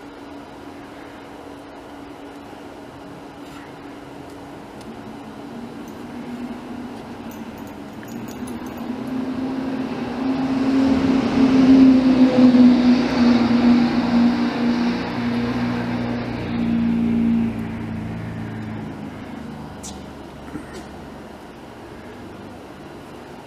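A passing motor vehicle's engine. It grows louder over several seconds, is loudest a little past the middle, then fades away with its pitch sinking slightly.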